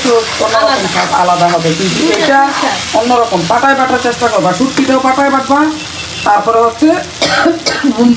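A spatula stirring and scraping sliced onions frying in a red spice masala in a non-stick pan, with a sizzle under repeated scraping strokes that carry a pitched note.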